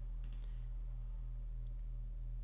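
Two quick computer-mouse clicks close together near the start, and a fainter one later, over a steady low hum.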